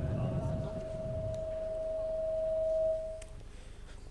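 Public-address microphone feedback in a large hall: one steady high tone that grows louder for about three seconds and then cuts off suddenly. A low rumble sits under it for the first second.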